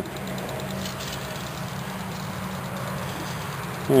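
A steady low hum of an engine or motor running at a constant speed, with no rise or fall in pitch.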